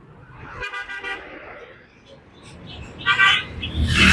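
Vehicle horns honking on a road with passing traffic: a couple of short toots about a second in and a louder one near the end, over a low rumble of traffic that grows at the end.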